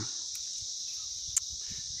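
Steady high-pitched insect chorus, with a faint single click about one and a half seconds in.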